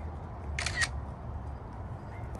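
A short, sharp double click about half a second in, over a low steady rumble.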